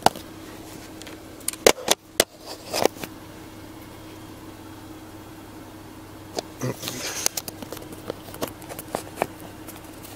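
Steady low hum of a parked vehicle left running, with sharp clicks and knocks about two seconds in and a run of smaller clicks and rustles in the second half as a night-vision monocular and camera are handled and lined up.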